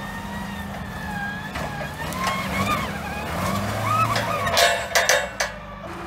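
A lifted Geo Tracker's engine running as the 4x4 drives over rough dirt and grass, with a wavering high tone over the engine hum. A run of sharp knocks and rattles comes near the end.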